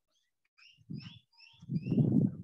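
A small animal chirping in the background: a quick series of short, high chirps, about three a second, after a brief silence. Low voice sounds from the reader begin near the end.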